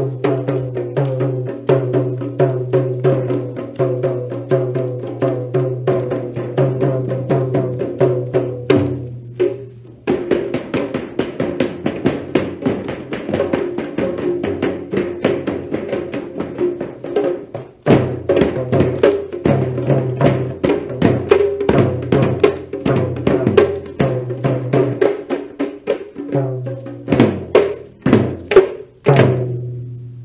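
Traditional Manipuri drum music: rapid, dense drumming over steady held low tones, with a brief break about ten seconds in and a change of pattern a few seconds later. It builds to a thunderous climax of heavy strokes near the end.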